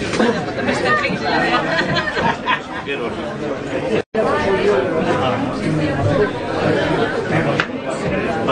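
Many people talking at once in indistinct, overlapping chatter, with no single voice standing out. The sound cuts out for a split second about four seconds in.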